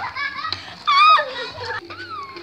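Children's voices calling out and talking, with one loud high-pitched shout about a second in.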